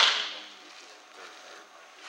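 A softball pitch smacking into a catcher's leather mitt: one sharp, loud pop that rings out and dies away over about half a second in the enclosed cage.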